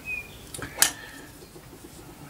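Small handling sounds as an LED cluster board is pressed into a traffic light module's plastic housing: a brief faint squeak, then a sharp light click a little under a second in.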